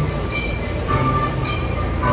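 Diesel engines of Cat compact track loaders running as the machines drive on gravel, with a steady low rumble and scattered short high squeaks from their moving tracks.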